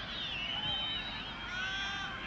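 Football stadium crowd over a steady background noise, with many overlapping high, wavering tones from whistles and horns.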